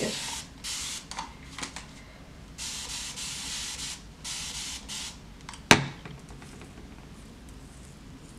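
Hand spray bottle misting hair in several hissing sprays, the longest lasting over a second about three seconds in. A single sharp click follows near six seconds, the loudest sound here.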